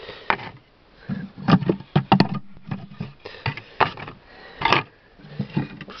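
Wooden beehive frames knocking and scraping against each other and the hive box as they are shifted by hand: a series of irregular clicks and knocks.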